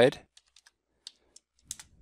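Computer keyboard keys tapped as a number is typed into a field: a handful of light, irregular keystrokes.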